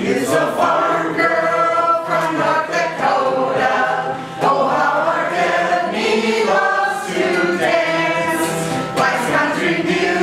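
A small group of men and women singing a song together, with an acoustic guitar strummed along.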